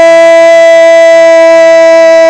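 Football commentator's drawn-out goal cry, one vowel held at a steady high pitch, very loud.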